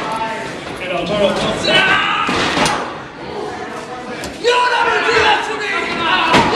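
Sharp slams of pro wrestlers' bodies and strikes in the ring, several times, the loudest about four and a half seconds in, over shouting voices in a large hall.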